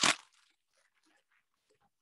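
A word trailing off, then near silence with a few very faint crinkles from a plastic disposable piping bag being handled.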